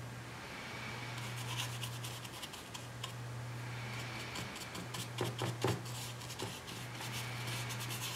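Paintbrush scrubbing and dabbing paint onto watercolour paper: a run of short scratchy strokes and light taps, busiest and loudest about five seconds in, over a steady low hum.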